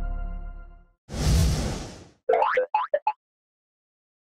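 Title-card sound effects: the ringing tones of a logo jingle fade out in the first second, a whoosh follows about a second in, then four quick cartoon sound-effect blips, each rising in pitch.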